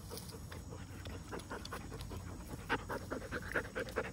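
Young Dutch Shepherd panting in quick, even breaths, close by.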